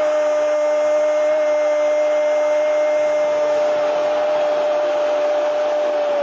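A steady whine holding one pitch, over an even hiss, unchanging in level.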